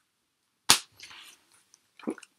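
One sharp snap about two-thirds of a second in, then a faint brief rustle, from a vinyl single in its sleeve being handled.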